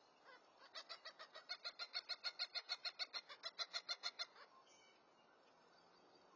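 A bird's rapid call: a run of about two dozen short, clear notes that quickens to about seven a second and lasts about three and a half seconds.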